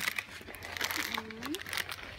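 Crinkling and rustling of snack packaging as a box of Custas custard cakes is handled and unwrapped: a dense run of small crackles, thickest in the first second.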